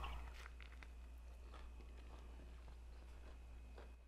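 A person biting into and chewing a corn-tortilla taco filled with fresh onions. Faint soft crunches and mouth clicks come every second or so over a low steady hum.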